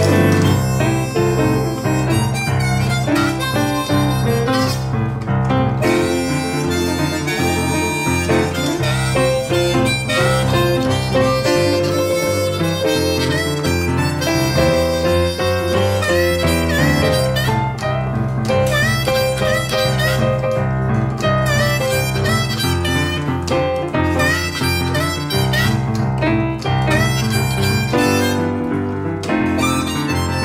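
Blues harmonica solo with held and bending notes, played over a boogie-woogie piano accompaniment that keeps up a steady repeating bass line.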